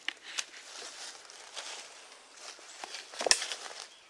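Footsteps through dry leaf litter and sticks on the forest floor: scattered crunches and crackles, with one louder sharp knock or snap a little past three seconds in.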